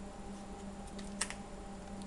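Trading cards being handled and flipped through by hand: a few small sharp clicks of the card edges about a second in, over a low steady hum.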